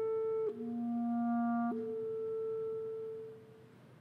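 Solo clarinet playing long held notes: a higher note, a drop to a lower note about half a second in, then a leap back up to the higher note, which is held and fades away after about three seconds.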